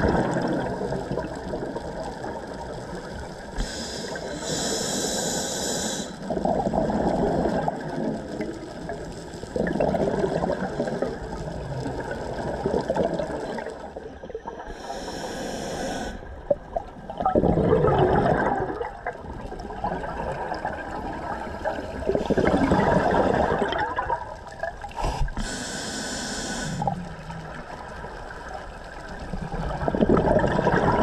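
A scuba diver breathing through a regulator underwater: three hissing inhalations spaced about ten seconds apart, with rushes of exhaled bubbles that swell and fade between them.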